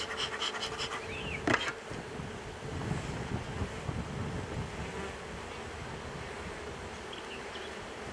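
Honey bees buzzing over an open hive, a steady hum throughout. A few short clicks and a knock come in the first two seconds.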